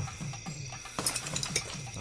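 Film soundtrack: a low pulsing score, about three falling pulses a second, with a quick run of metallic clinks about a second in.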